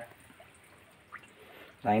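Faint room tone in a pause between words, with one brief faint tick about a second in.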